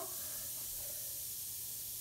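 Steady high hiss of a Beaker Creatures effervescent reactor pod fizzing as it dissolves in a bowl of water.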